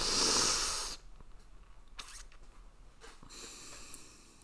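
A man's heavy breath close to the microphone, swelling and fading over about a second, followed by a softer breath near the end.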